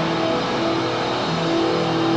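Hard rock band playing live: distorted electric guitar holding long chords over drums.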